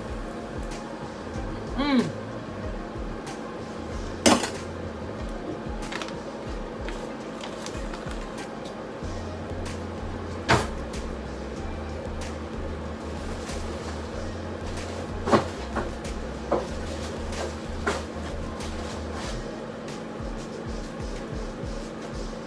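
Kitchen clatter: a handful of sharp clicks and knocks, several seconds apart, over a steady low hum and faint background music.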